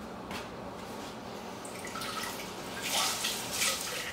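Crumbly streusel topping sprinkled by hand onto the pies, loose crumbs falling onto the metal muffin tin. It is faint at first and grows louder for a moment about three seconds in.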